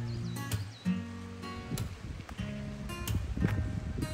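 Background music: acoustic guitar strumming chords, a new strum about every half second to second.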